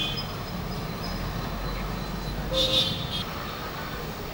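Street traffic noise, steady and low, with a short, high vehicle horn toot about two and a half seconds in.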